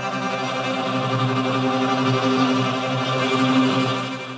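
A sampled kamanche, the Persian bowed spike fiddle, playing one long held bowed note with a full set of overtones, growing a little louder toward the end.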